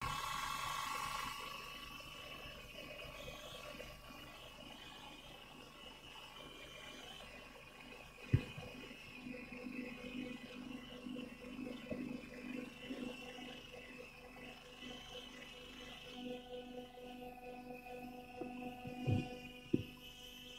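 Quiet hall ambience over a sound system: a faint steady electrical hum under a low murmur, with one sharp knock about eight seconds in and a couple of soft thumps near the end.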